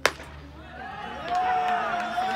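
A single sharp pop as a pitched baseball smacks into the catcher's mitt on a taken pitch. From about a second in, voices from the field and bench call out, one of them a long drawn-out shout.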